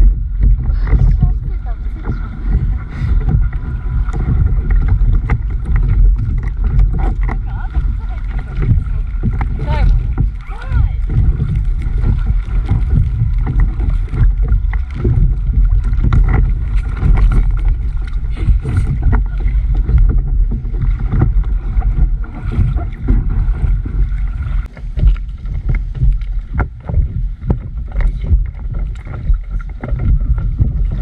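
River water rippling and lapping against a stand-up paddleboard drifting into the stony shallows, over a steady, loud low rumble on the microphone.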